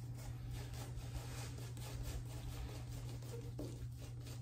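Shaving brush loading on a shave soap puck: a quiet, fast, even run of soft scratchy swishes, several a second.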